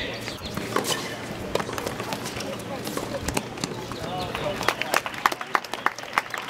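Tennis balls struck by racket strings in a rally on an outdoor hard court: a string of sharp pops, coming more often in the last couple of seconds, with people's voices talking in the background.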